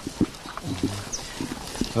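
Speech only: a soft, quiet spoken reply with short pauses, and no other distinct sound.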